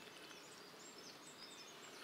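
Near silence: faint outdoor ambience with a few faint high chirps.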